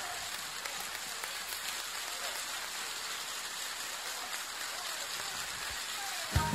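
Live concert audience applauding steadily, with a few faint cheers over the clapping.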